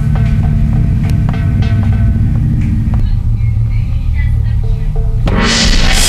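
Background music with plucked notes over a deep bass, then about five seconds in a large hanging gong is struck: a sudden bright crash that keeps ringing, the royal gong signal for all to bow down.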